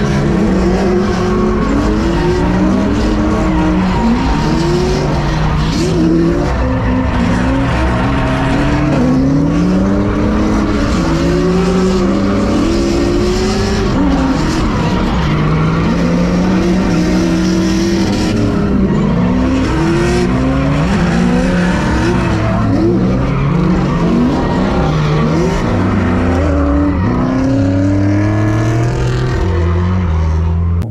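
A drift car's engine heard from inside the cabin, revving up and down again and again through a drift run, its pitch rising and falling every second or two, with tyres skidding and squealing under it.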